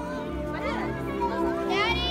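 Background music with overlapping children's voices and chatter at a crowded party, and a brief high-pitched squeal near the end.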